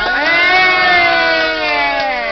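A voice holding one long, loud note that rises briefly and then slowly falls in pitch, with no backing music under it.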